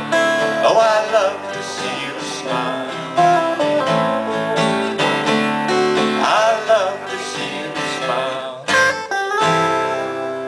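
Two guitars, one acoustic and one electric, playing the instrumental close of a song live, with a short break just before the final chords.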